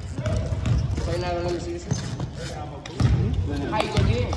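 A basketball being dribbled and bouncing on a hardwood gym floor, in irregular thumps, with players' voices calling out around it.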